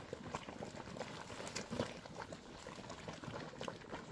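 Geothermal mud pool bubbling, with thick mud popping in short, irregular bursts.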